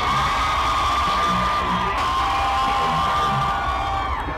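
Loud live music through a concert PA: a deep bass beat under one long held high note, joined by a second lower held note about halfway through, with a crowd cheering over it.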